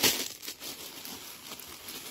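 Mail packaging crinkling and rustling as it is handled and opened by hand.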